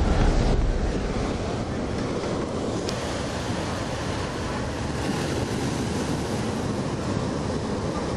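Ocean surf breaking and washing onto a stony beach: a steady rush of waves.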